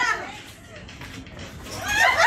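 A group of people shouting and laughing excitedly. The voices die down in the middle and swell again near the end.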